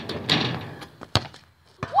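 A football kicked hard on a penalty: one sharp thud about a second in, followed by a fainter knock just before the end.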